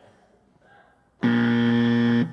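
Quiz timer's time-up buzzer: one loud, steady buzzing tone lasting about a second, signalling that the answer time has run out.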